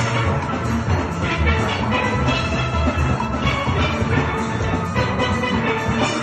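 A steel band of many steelpans playing a tune together, with a pulsing low beat underneath.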